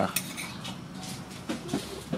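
Metal spoon and fork clinking and scraping on a plate as a child eats, with a sharp click right at the start and lighter ticks after.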